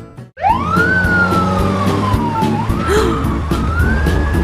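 A single-tone siren sound effect wailing: it rises sharply just after a brief drop-out at the start, falls slowly, then rises again and holds near the end. Background music with a steady beat plays under it.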